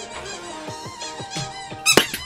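A rapid string of high-pitched, sliding squeaks over music, with a louder squeak near the end: the distracting noise that breaks a student's concentration.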